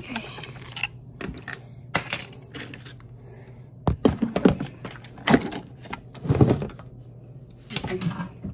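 Handling noise from a phone camera being picked up and moved: irregular taps, knocks and rustling close to the microphone, thickest around the middle, over a faint steady low hum.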